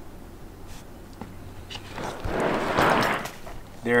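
A soft-sided cooler packed with ice and water being lifted off its side and set upright on concrete: a rustling, shifting noise lasting about a second, starting about two seconds in.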